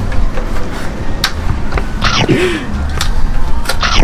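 Wind rumbling on the microphone, with a few sharp clicks and a short sliding vocal sound about halfway through.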